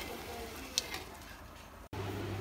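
Wooden spoon stirring sugar that is melting into caramel in a large stainless steel pot, a faint sizzle and scrape with one sharp click a little under a second in.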